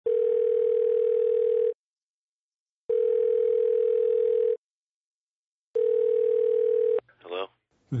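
Telephone ringing tone heard down a phone line: one steady mid-pitched tone sounding three times, each for about a second and a half with a pause of about a second between. The third ring cuts off abruptly, and a brief voice follows, as on a call being answered.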